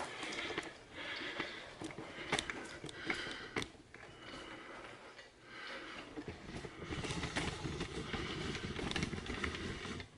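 Handling noise: rustling, with a few sharp knocks in the first few seconds and heavier rustling near the end, as the camera is picked up and moved.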